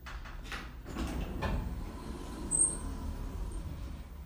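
Elevator's automatic sliding doors opening, with a few clicks as they start and a low rumble from the door operator as they travel. A brief high-pitched squeak comes about two and a half seconds in.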